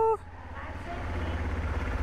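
Honda CRF250L's single-cylinder four-stroke engine running at low revs as the bike rolls slowly forward, a steady low rumble that grows slightly louder.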